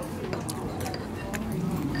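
Several light clinks of a ceramic soup spoon against a clay Yunnan steam pot as it stirs the chicken broth, over the murmur of restaurant chatter.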